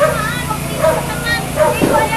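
A crowd of onlookers shouting and calling out over one another, several voices at once, with a steady low engine hum underneath.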